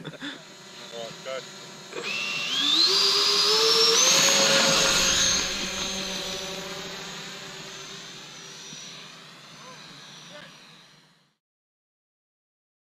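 Twin 70 mm twelve-blade electric ducted fans spooling up with a steeply rising whine. They are then held near full power, with a steady high whine that grows slowly fainter. The sound cuts off suddenly near the end.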